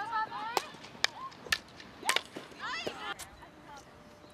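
Field hockey sticks cracking against hard plastic balls in shooting practice: about six sharp, separate cracks spread over the few seconds, with players' voices faint in the background.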